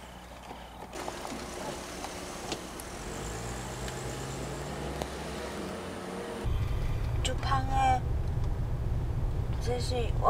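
A car's engine and tyres as a sedan pulls away from the kerb and drives past, the engine note rising slightly. About six and a half seconds in, this gives way to the louder, steady low rumble of the car driving, heard from inside the cabin.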